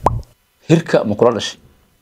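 A single short plop at the very start, its pitch falling quickly, with a low thud under it.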